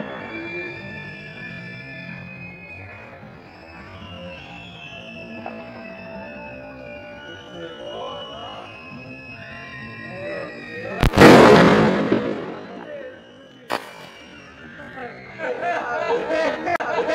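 A single loud bang from a garra de tigre firecracker about eleven seconds in, with a rumbling tail lasting a second or so. It is followed a couple of seconds later by one smaller sharp crack, over background music.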